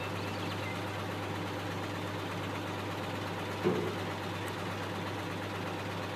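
Detroit Diesel 6V92 two-stroke V6 diesel idling with a steady low drone. A short louder sound comes through near the middle.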